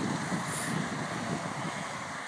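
Steady rushing wind noise on a phone's microphone, with a brief sharper hiss about half a second in.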